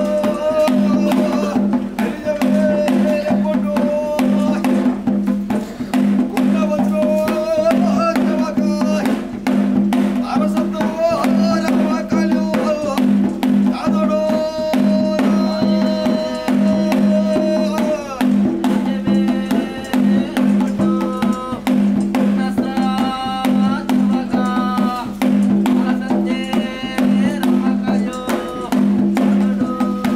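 Traditional daiva kola ritual music: a barrel drum beaten in a dense, continuous rhythm under a melody of long held notes over a steady drone.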